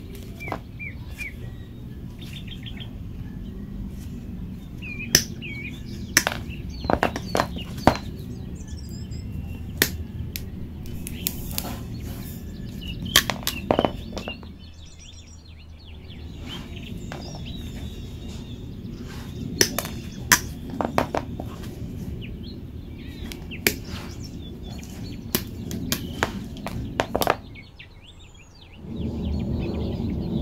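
Combination pliers cutting Cat5e LAN cable and then 2.5 mm² wire: a series of sharp clicks and snaps in clusters as the jaws bite and shear through. Birds chirp in the background.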